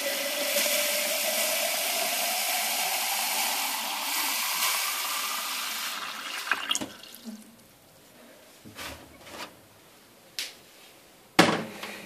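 Cold tap water running into a glass jug of cut lemon pieces, with a tone that rises steadily in pitch as the jug fills. The water stops about halfway through, followed by a few light knocks and clinks as the jug is handled.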